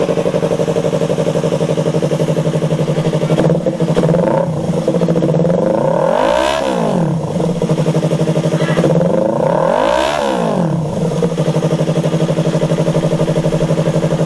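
Yamaha R3's parallel-twin engine idling steadily through an SC Project exhaust canister with a resonator. The throttle is blipped twice, around the middle and again a few seconds later, each rev rising and dropping back to idle within about a second.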